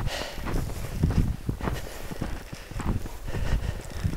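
Footsteps trudging through deep fresh snow, about two steps a second, each a short soft thud.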